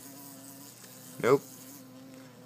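A very large bee, about hummingbird-sized, buzzing in flight: a steady, unbroken drone with a low hum at its base.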